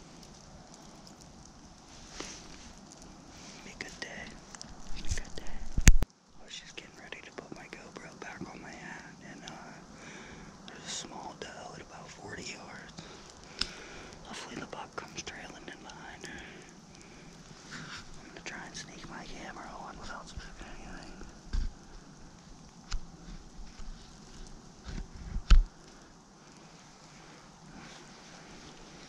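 Close handling noise of a GoPro camera being strapped into place: rustling, scraping and small clicks against the microphone, with a loud knock about six seconds in and another near the end.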